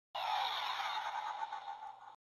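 A sound effect: a steady, noisy hum that starts abruptly just after the beginning, tapers slightly and cuts off about two seconds later.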